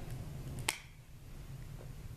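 A single short, sharp click about two-thirds of a second in, over a low steady hum.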